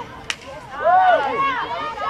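A single sharp crack of a field hockey stick about a quarter second in, followed by loud shouting voices.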